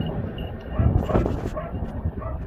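Search dog barking and yipping in short bursts, loudest about a second in.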